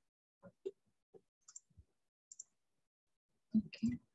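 Scattered computer mouse clicks, some in quick pairs, as windows are switched on a desktop. Two louder short knocks come a little over three and a half seconds in.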